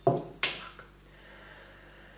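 Plastic spatula set down on a paper-covered table: two light clicks about half a second apart, then quiet.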